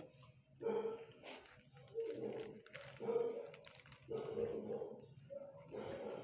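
Dog barking repeatedly in a shelter kennel, about one bark a second.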